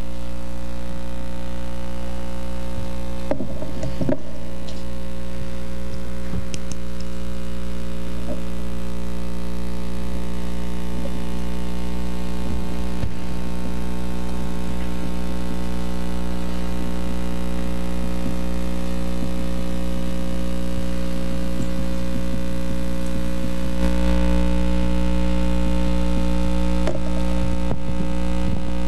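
Steady electrical mains hum on the meeting-room sound system, with a few faint handling or movement noises early on, the hum growing louder about four seconds before the end.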